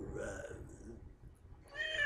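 A calico cat meowing: one drawn-out meow starts near the end, falling slightly in pitch.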